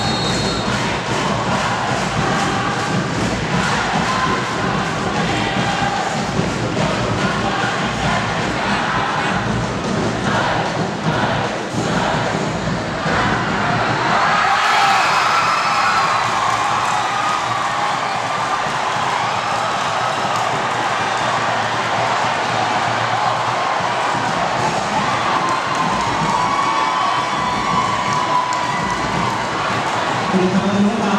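Large football stadium crowd chanting and cheering over a steady rhythmic beat, swelling into louder cheering about halfway through.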